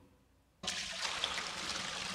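Water being poured, a steady pour that starts abruptly about half a second in and keeps running.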